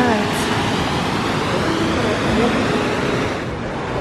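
Steady rush of a waterfall pouring over rock, with snatches of faint voices; the rush eases near the end.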